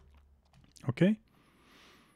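A couple of faint computer keyboard keystrokes.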